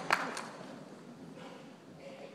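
A few last scattered claps from a concert-hall audience in the first half second, then the low noise of the audience settling in the hall.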